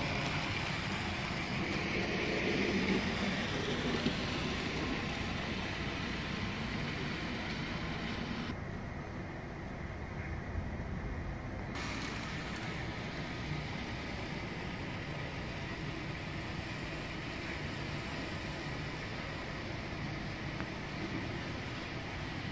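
Model train running on the layout's track: a steady rumble and hiss with no distinct events.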